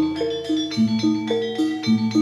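Javanese gamelan music for a jaranan dance: tuned metal gong-chimes and metallophones strike a repeating melody at about three to four notes a second over low held tones that change about twice.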